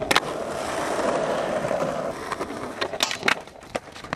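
A skateboard lands from a jump with a sharp clack, then its wheels roll on rough asphalt for about two seconds. A few loud clacks and knocks come near the end as the skater slams and the board hits the ground.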